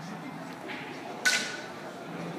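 A single sharp click of snooker balls striking each other, with a brief ring, about a second and a quarter in, over the low background of a large hall.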